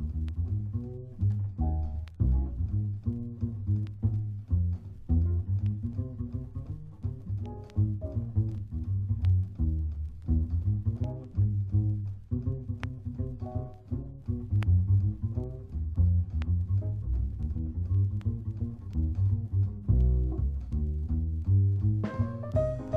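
Background jazz music, a passage of deep plucked bass notes in a quick, steady run, with no singing.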